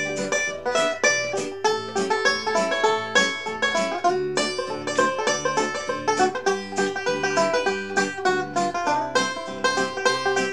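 Resonator banjo picked in a steady, rhythmic instrumental break of a swing tune, with a quick run of plucked notes throughout.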